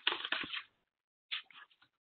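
A sheet of paper rustling and crinkling as it is handled and folded: a few quick crackles in the first half second and one short crackle a little after a second in.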